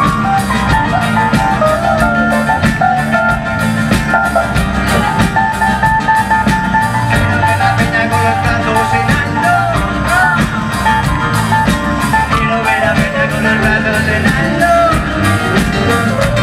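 Live band playing a raggamuffin song, with a steady drum beat under keyboard and guitar lines.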